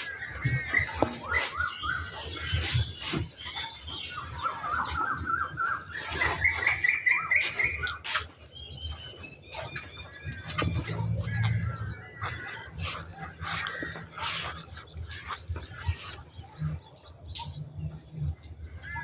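Birds calling: repeated short chirps, with a run of quick notes climbing steadily in pitch a few seconds in.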